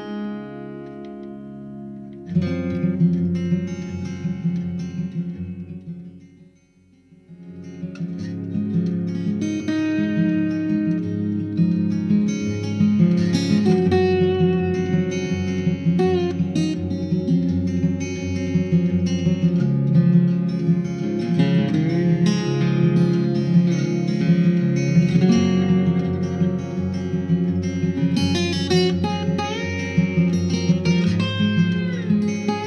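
A music track played from a phone through a home-built class A amplifier and loudspeakers, picked up by microphones. The music steps up in level about two seconds in, drops away briefly around six to seven seconds in, then comes back louder and carries on.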